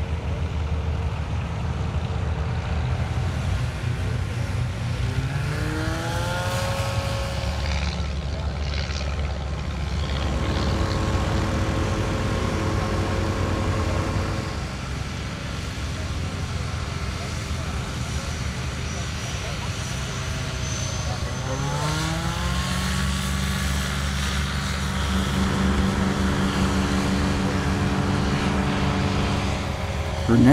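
Aerolite 103 ultralight's engine and propeller running at a steady hum, its pitch rising twice as the throttle is opened, about five seconds in and again about twenty-one seconds in. The second rise goes into the takeoff run.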